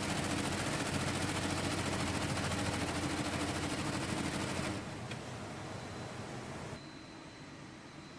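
Industrial embroidery machine stitching quilted leather: a loud, fast, even needle clatter that drops away about five seconds in, leaving a quieter steady factory background.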